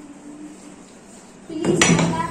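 Glass bottle spun on its side on a wooden tabletop: about one and a half seconds in, a short burst of loud, fast rattling and scraping of glass on wood as it starts to spin.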